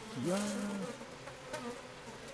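Asian honeybees buzzing as the colony masses at the hive entrance to defend it against a yellow-legged hornet held there. A louder, steady-pitched hum stands out in the first second.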